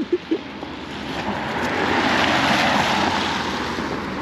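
A vehicle passing on a wet, slushy road: tyre hiss that swells to its loudest about two to three seconds in, then fades. A few short pitched sounds come right at the start.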